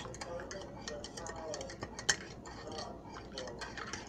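Metal spoon stirring tea in a ceramic mug, clinking against the mug's sides in quick, irregular ticks as sugar is mixed in.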